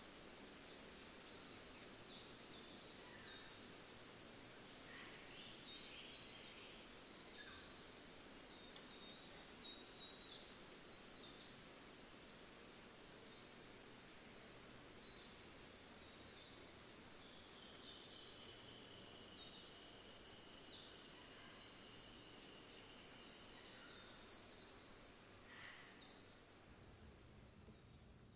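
Faint chirping of small birds: many short, high, quick calls throughout, with one longer held note for several seconds in the second half, over a low steady background hiss.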